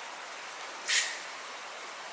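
One short hiss of an aerosol spray sunscreen can, sprayed onto skin about a second in, over quiet room tone.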